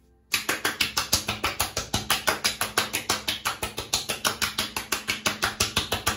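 Palms rapidly patting and slapping freshly shaved face and neck to work in aftershave lotion, a fast even run of light slaps about seven a second, starting a moment in.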